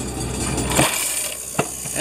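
Coins clattering through a bank's self-service coin-counting machine as they are fed in and counted, over a steady low machine hum. The hum cuts off just under a second in, and separate coin clinks follow.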